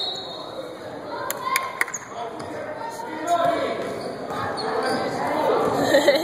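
A basketball game in a large gym: a ball bouncing on the wooden court and voices echoing in the hall, with a few sharp knocks about a second and a half in.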